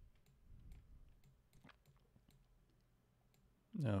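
Faint, irregular clicks of a computer mouse being operated at a desk.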